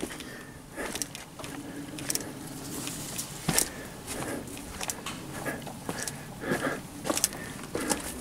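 Footsteps with scattered light knocks and rustles, a person walking with a handheld camera.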